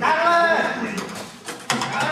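Stage dialogue: a voice speaking in a large room for about the first second, then a single sharp knock near the end.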